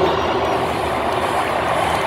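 Two monster trucks' supercharged V8 engines running steadily while the trucks sit staged at the start line of a race.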